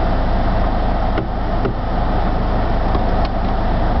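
Car engine running, heard from inside the cabin as a steady low rumble.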